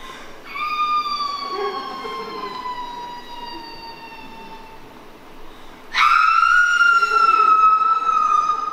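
A long high wail that slides slowly down in pitch over about four seconds, then a second, louder wail that starts abruptly about six seconds in and also falls slowly.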